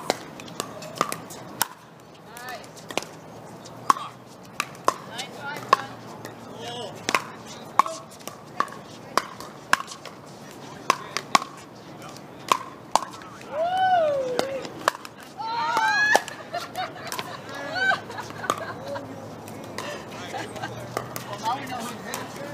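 Pickleball rally: sharp pops of paddles striking a hard plastic pickleball and the ball bouncing on the court, coming every half second to a second. A couple of short vocal exclamations cut in about two-thirds of the way through.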